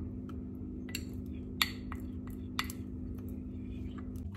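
A metal spoon clinking against a small glass bowl, several separate sharp clinks, as honey is scraped out of it into a glass saucepan. A steady low hum runs underneath.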